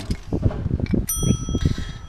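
A few clicks, then a bright bell ding about a second in that rings on steadily for about a second: the notification-bell sound effect of an animated subscribe button.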